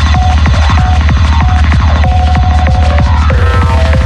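Dark hi-tech psytrance at 190 bpm: a fast, steady kick locked with a rolling bass line, and a short synth tone that keeps repeating above it.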